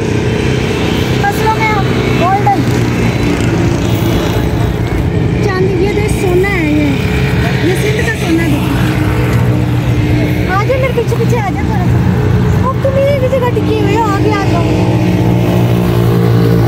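An engine running at a steady, unchanging pitch, with faint voices over it.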